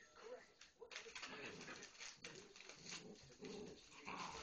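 Six-week-old puppies play-fighting, giving soft low growls and grumbles in short bouts over the scuffling of their bodies on the bedding.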